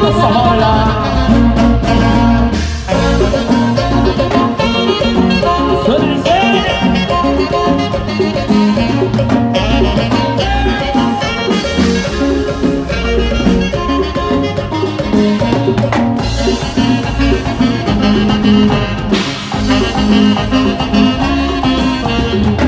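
A live band playing Latin dance music through a PA, with a steady dance beat.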